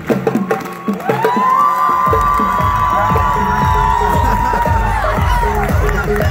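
Audience cheering and whooping, with long high held shouts from about a second in to near the end, over drum strokes and clapping.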